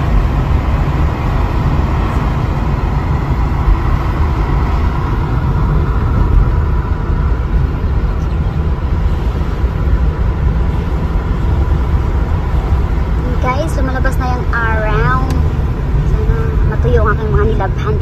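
Steady low rumble of road and engine noise inside the cabin of a moving car. A voice comes in over it in the last few seconds.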